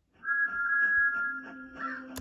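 Sombre music begins about a quarter of a second in, with two high notes held together. A low steady note comes in about halfway through.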